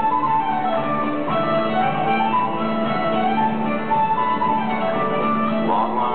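Live contra dance band playing a fiddle tune, the fiddle carrying the melody over a steady low held note.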